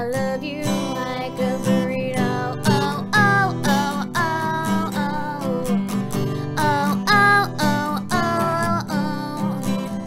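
A woman singing a melody over her own strummed acoustic guitar, with the voice holding and sliding between long notes.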